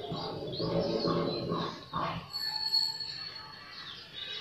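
Birds chirping over quiet background music, with a brief steady high whistle-like tone about halfway through.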